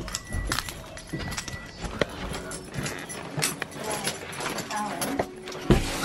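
Footsteps on stairs, an irregular series of knocks about every half second, mixed with handling knocks from a hand-held camera.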